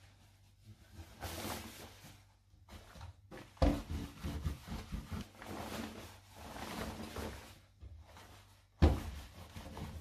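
Cotton fabric rustling and swishing as a garment is lifted, folded and smoothed on a table, with two sharp thumps, one about three and a half seconds in and a louder one near the end.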